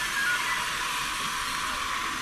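A loud, steady hiss of noise with no distinct pitch or rhythm.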